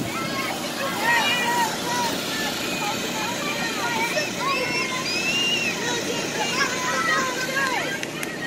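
Several children's voices calling and shouting over one another in overlapping babble, over the steady drone of the inflatable's air blower.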